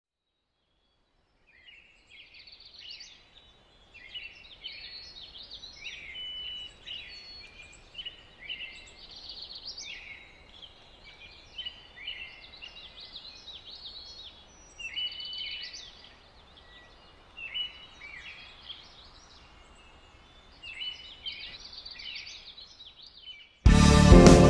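Birds singing, a busy chorus of short, high chirps that come and go in clusters. Loud band music cuts in suddenly just before the end.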